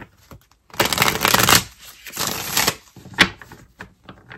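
A deck of tarot cards being shuffled by hand in two rustling runs of cards slipping against each other, then a single sharp click near the end.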